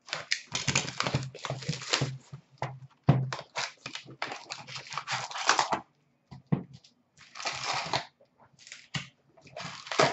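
An Upper Deck SP Authentic hockey card box being torn open and its wrapped packs pulled out: a run of crinkling, ripping and rustling of cardboard and pack wrappers, almost unbroken for about six seconds, then in shorter bursts.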